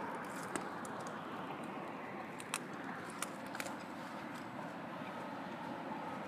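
Steady outdoor background noise with a few short, sharp clicks scattered through it.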